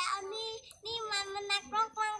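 A young child's voice singing in long held notes, broken by short pauses.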